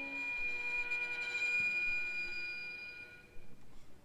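Piano trio of violin, cello and piano in a contemporary classical piece, letting a soft, thin, high sustained tone ring with a few faint higher overtones; it fades away about three seconds in, leaving a quiet pause.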